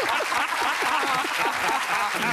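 Studio audience applauding: a steady wash of many hands clapping.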